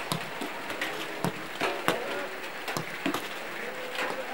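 A football being struck on a training pitch: several sharp thuds at irregular intervals, the loudest about two seconds in, with faint distant voices behind.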